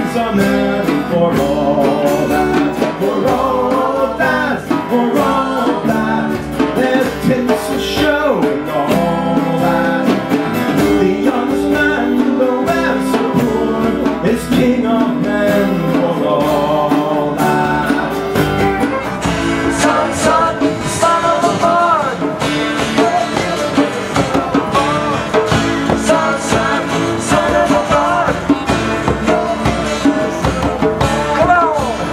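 Folk-rock band playing live: several strummed acoustic guitars with group singing over them.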